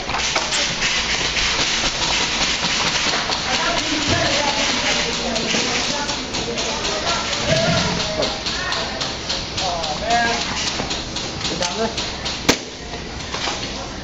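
Indistinct shouting voices of airsoft players over a steady run of clicks and knocks, with one sharp crack about twelve and a half seconds in.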